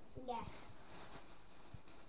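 A child's brief "yes, yeah", then faint rustling of a plastic bag as a sweet is picked out of it.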